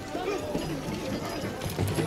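Hooves of horses galloping on a dirt arena floor, under voices of a crowd.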